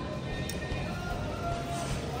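Soft background music with a few faint held notes over a low, steady background hum.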